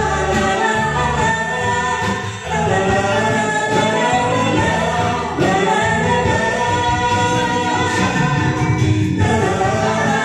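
A man and a woman singing a karaoke duet into handheld microphones over a backing track.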